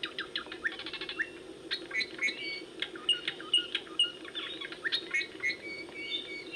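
Several birds chirping and calling in quick succession: short repeated notes and fast down-sweeping chirps, over a steady low hum.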